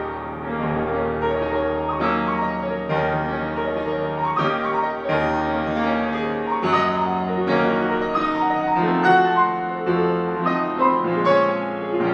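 Grand piano played solo: a flowing passage of ringing chords, with new notes struck about every second over held bass notes.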